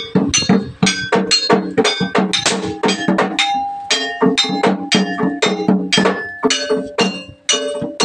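Kuda kepang (jaranan) dance music in gamelan style: struck metal gongs and pots ringing over drum strokes, in a fast, even beat of about three to four strikes a second. The beat breaks off briefly shortly before the end.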